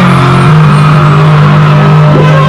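Loud live dancehall music through a stadium PA, with a low bass note held steady and no vocals.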